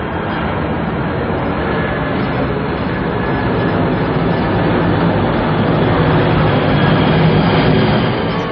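Jet engines of a low-flying Boeing 747 passing overhead: a steady rushing rumble that grows slowly louder.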